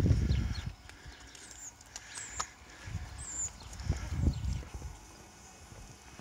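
A few short, high chirps of birds and some low thuds over a quiet outdoor background.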